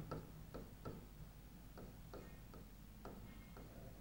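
Faint, irregular taps and scratches of a marker pen writing on a whiteboard, a few strokes a second, with a couple of short squeaks near the end.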